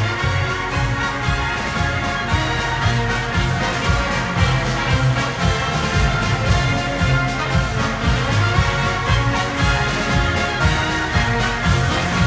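Brass band music, an instrumental march with a steady beat.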